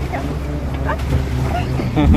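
Off-road jeep's engine running with a steady low rumble as it drives over a rough, muddy dirt track, with wind buffeting the microphone.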